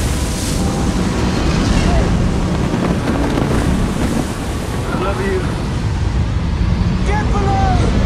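Loud, steady storm wind and crashing ocean waves, as in a hurricane at sea, with a few brief voice-like cries cutting through about five and seven seconds in.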